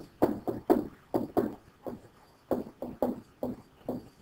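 A stylus knocking and scratching on a tablet screen while a word is handwritten: about a dozen short, irregular taps.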